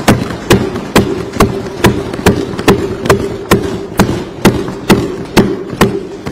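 Legislators thumping their wooden desks in approval, the assembly's form of applause, in a steady rhythm of about two beats a second, some fourteen strikes in all.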